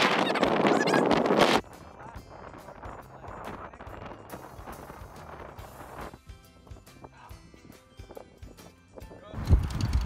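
Wind buffeting the microphone, cutting off abruptly about a second and a half in, then a much quieter stretch with faint music.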